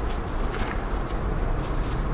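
A steady low rumble with a few faint scrapes and ticks as gloved hands work soil loose around a buried stoneware flagon.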